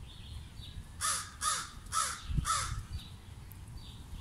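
A bird calling four times in quick succession, short harsh calls about half a second apart, with faint chirps of small birds around it.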